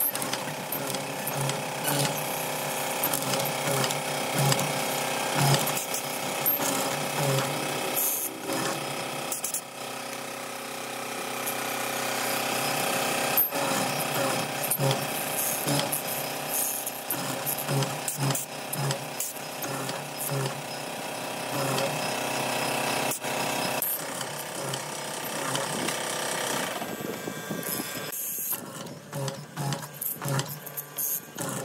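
Hollow-chisel mortising machine running, its square chisel and auger bit plunging again and again into wood to cut a mortise, with a steady motor whine and repeated chopping pulses.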